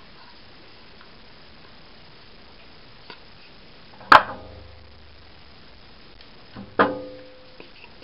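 Hard plastic tool-housing parts of a Dremel Multi-Max knocking together as it is reassembled: a faint tick, then two sharp knocks with a short ringing tail, the first and loudest about four seconds in, the second near seven seconds.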